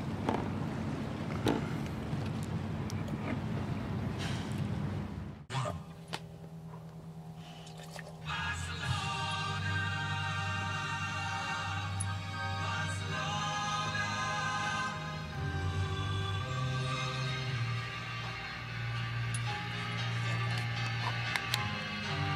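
Outdoor ambience with wind on the microphone and a steady low hum, cut off suddenly about five seconds in. After a short quieter gap, background music starts about eight seconds in and runs on.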